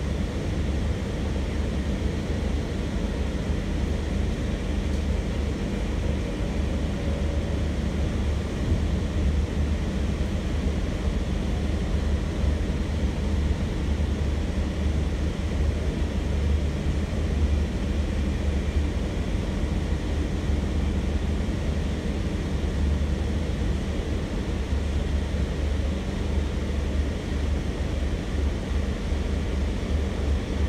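Steady low rumble heard inside a Sydney Trains K set double-deck electric train carriage running at speed, with no break or change.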